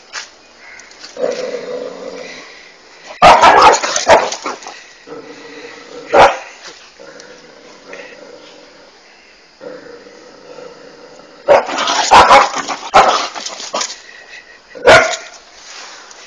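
Dog barking in loud bursts: a cluster of barks about three seconds in, a single bark around six seconds, a longer run around twelve seconds and one more near the end.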